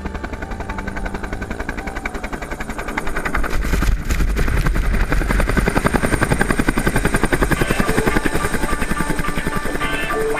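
Helicopter landing close by: fast, steady rotor-blade chop that grows louder about three seconds in as it comes down beside the camera, with its downwash blasting up snow.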